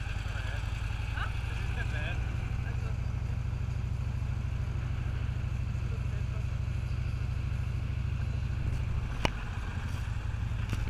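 Motorcycle engine running at low revs with an even low pulse, with a single sharp click a little after nine seconds.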